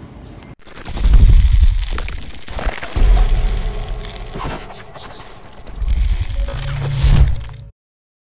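Sound effects of an animated logo intro: deep booms about one, three and six seconds in, with crackling and fizzing sparks between them, cutting off suddenly shortly before the end.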